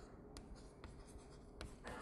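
Chalk writing on a blackboard: faint scratching, with several short taps of the chalk against the board as the letters are made.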